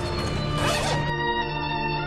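A bag zipper pulled open in one short rasp, about half a second long, about half a second in, over steady background music that carries on alone after it.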